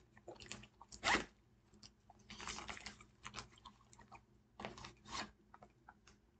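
A small fabric pouch on a portable solar panel charger being opened and rummaged through by hand: irregular rustles, crinkles and scrapes, with a sharper scrape about a second in and a longer rustle in the middle.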